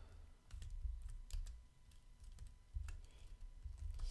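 Typing on a computer keyboard: a run of irregular, fairly faint keystroke clicks.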